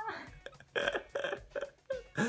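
Quiet, breathy laughter: a few short bursts of stifled chuckling after a bigger laugh.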